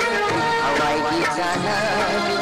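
Old Manipuri song playing, with a wavering melody line over steady accompaniment.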